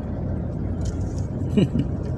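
Steady low rumble of a car's engine and tyres heard from inside the cabin while driving, with a brief voice near the end.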